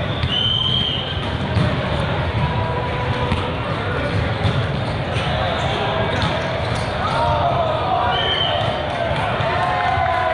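Echoing hubbub of a busy volleyball hall: many voices mixed with scattered thuds of volleyballs being hit and bouncing on several courts. Two short high-pitched tones cut through, about half a second in and again about eight seconds in.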